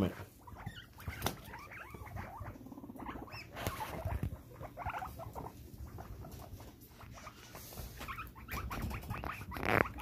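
Two guinea pigs squabbling over territory: brief crying calls and squeaks with quick scurrying footsteps on fleece bedding. There is no tooth chattering, the sign that the dispute has not escalated to a fight.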